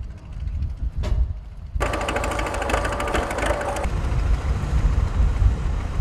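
Truck engines running steadily with a deep rumble, and about two seconds in a louder, rapid mechanical chatter. The engines are parked fire-service vehicles at work with a hose joined between them.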